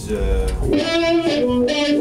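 Electric guitar playing a single-note melodic line, the notes changing every fraction of a second. A deep low part sounds under it and drops out just under a second in.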